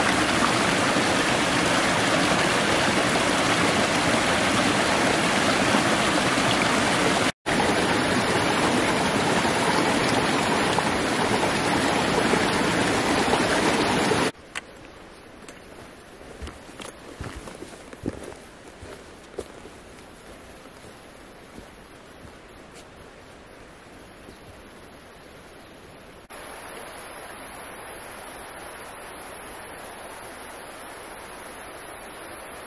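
A small mountain stream tumbling over mossy boulders: a loud, steady rush of water. About halfway through it gives way to a much quieter forest background with a few faint clicks and rustles.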